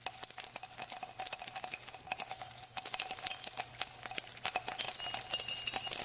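Jingling bells: a bright, steady shimmer of many quick metallic strikes with a high ringing tone, starting abruptly and cutting off suddenly.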